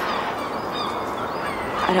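Steady outdoor background noise with a few short, faint bird calls.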